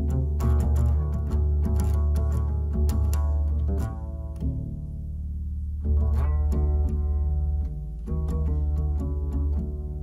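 Double bass played pizzicato: a run of deep plucked notes that eases to a quieter stretch about halfway through, then picks up again.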